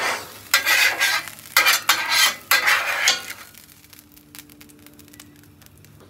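Metal spatula scraping charred onions across a steel flat-top griddle and into a skillet of mashed beans, with sizzling: about four loud scrapes in the first three seconds, then a quieter stretch.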